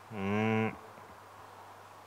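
A man's voice holding one low, steady-pitched syllable for about half a second near the start, as in intoned recitation, heard through a microphone. After it only a faint steady electrical hum remains.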